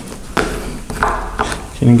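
Knife cutting through a baked pie crust: a few short scrapes and taps of the blade.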